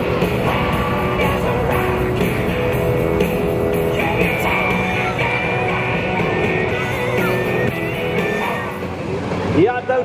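Music with singing, at a steady, fairly loud level, changing abruptly just before the end.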